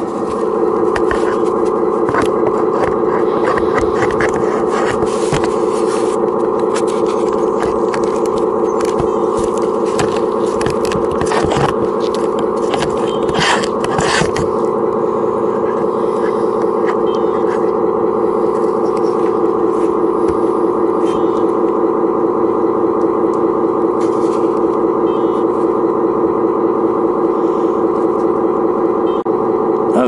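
Electronic engine-sound module of an RC scale construction machine playing a simulated diesel idle through its small speaker: a steady, unchanging buzz that pulses slightly in the second half. Scattered clicks and scrapes come through in the first half.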